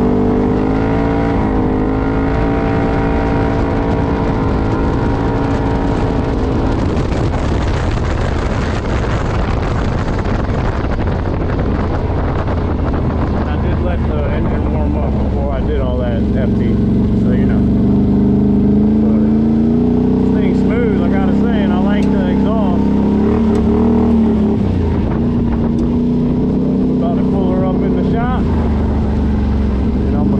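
Can-Am Outlander 850 XMR ATV's V-twin engine, on its stock CVT clutch, running steadily under way at high revs. About halfway through the pitch drops lower and wavers as the engine slows to lower revs.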